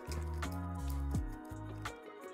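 Background instrumental music: sustained notes over a bass line that steps from note to note.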